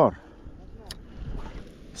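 Faint wind and water lapping, with one sharp click about a second in.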